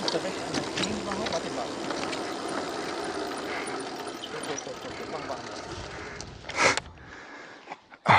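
E-bike rolling over a track of cracked concrete slabs, with steady tyre and rattle noise and scattered knocks as the wheels cross the slab joints. A brief louder rush comes near the end.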